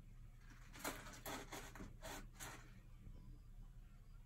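A ragdoll kitten's paws scratching in the litter of a toilet-training tray: about six quick, faint scrapes over a second and a half, starting about a second in.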